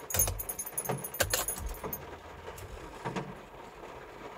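Car keys jangling on their ring as the key is turned in the ignition switch to switch the ignition on, with sharp clicks and low thumps in the first second and a half, then a few faint clicks; the engine is not started.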